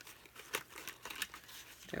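Glitter cardstock crinkling with scattered small crackles as a die-cut snowflake is worked free of the sheet by hand, the paper bent and rolled so the cut pieces pop out.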